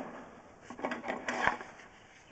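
A few short rattling, scraping knocks from a drain inspection camera's push rod being fed into the pipe, bunched in the middle of the moment.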